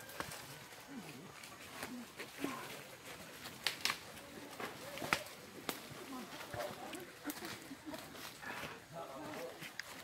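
Faint voices of people talking some way off, with scattered rustles and several sharp clicks and crackles as hikers push through undergrowth on a trail.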